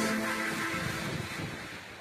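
Tail of an intro logo jingle: its held notes die away about half a second in, leaving a rushing, whoosh-like wash that fades steadily down.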